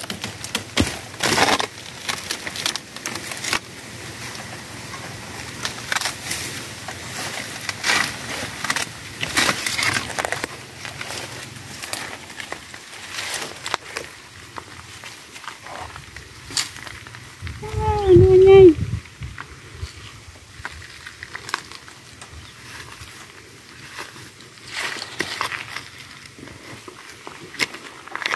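Dry bamboo leaves and stems crackling, snapping and rustling as a bamboo shoot is harvested from a clump. About two-thirds of the way through comes a short wordless vocal sound, the loudest thing heard.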